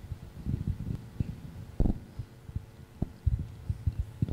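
Irregular low thuds and bumps, with a sharper knock about two seconds in and a cluster of them near the end, over a faint steady hum.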